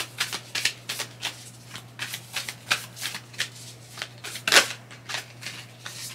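Tarot cards being shuffled by hand: a quick run of short card swishes and taps, about three a second, the loudest about four and a half seconds in.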